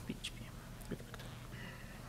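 Quiet room hum with a few faint, short clicks scattered through it.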